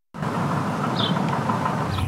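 Outdoor street ambience with a steady rush of noise like passing traffic, cutting in abruptly just after the start, with one brief high chirp about halfway through.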